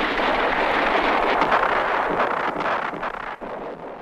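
A dense rushing noise with scattered crackles, the soundtrack of a battle scene, fading out over the last second.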